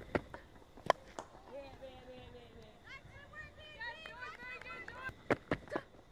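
Cricket field sound from the stump microphone: a sharp crack of bat on ball about a second in, then players' calls and shouts from the field, and a quick run of sharp knocks near the end.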